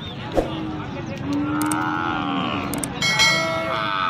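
Cattle mooing: one long, drawn-out call with a slight rise and fall, after a short knock just at the start. About three seconds in, a bright ringing electronic chime cuts in over the market noise.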